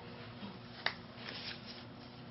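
Paper fraction cards handled and laid down on a board: faint rustling of paper with one sharp tap a little under a second in.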